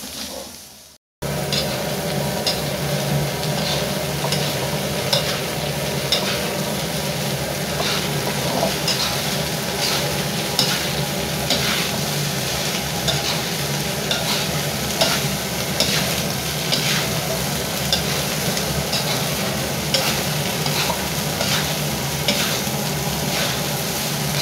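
Fried rice with squid and stink beans sizzling in a metal wok while a spatula stirs and scrapes through it, the scrapes repeating roughly once or twice a second over a steady sizzle. The sound drops out briefly just under a second in.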